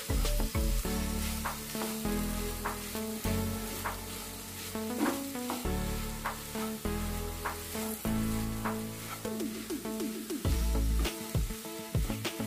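Spatula stirring and scraping a potato-and-vegetable mixture in a nonstick pan, with repeated scrapes and taps against the pan and a light sizzle from the frying mixture. Background music plays throughout.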